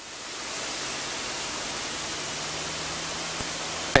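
Steady cockpit noise of a Citabria light aircraft in flight: engine and airflow heard as an even hiss with a faint low hum underneath. It swells over the first half second, then holds level.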